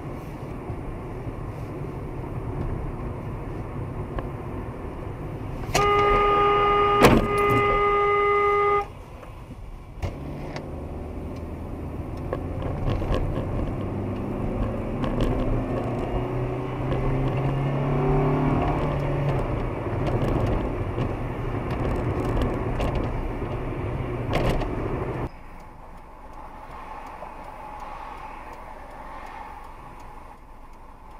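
Car horn blaring steadily for about three seconds, the loudest sound, over the steady road and engine noise of a moving car heard from inside. Later the engine pitch rises as the car speeds up, and the road noise drops suddenly near the end.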